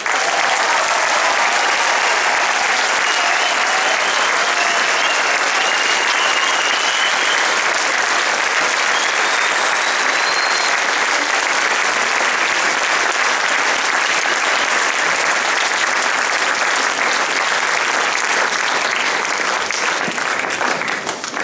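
Large audience applauding steadily, the clapping starting the moment the orchestra's final piece ends.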